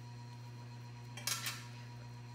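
A short, quiet snip of scissors cutting off excess tying material on a fly hook, about a second and a quarter in, over a faint steady hum.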